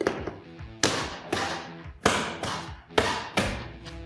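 A run of about seven sharp knocks, each with a short ringing tail, over background guitar music.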